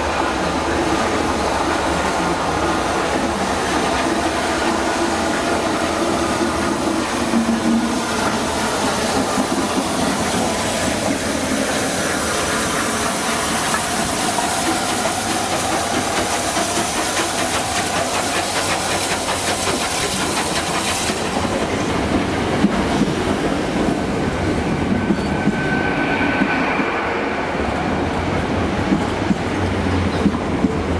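Rebuilt Bulleid Pacific steam locomotive 34052 moving slowly, with a steady hiss of steam and an even clicking of wheels over the rail joints. Near the end a modern diesel-electric express train comes in alongside.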